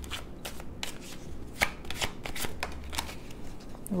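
Tarot cards being shuffled and handled by hand: a run of irregular soft clicks and snaps of card against card.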